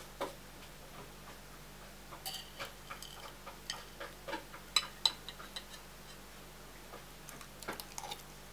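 Metal fork and spoon clinking and scraping against a ceramic bowl while scooping food: a string of light, irregular ticks, with a few ringing clinks and two sharp, louder ones about halfway through.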